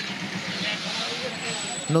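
Outdoor ambience of a busy open-air paddy market: a steady wash of background noise with indistinct voices and a low, even hum.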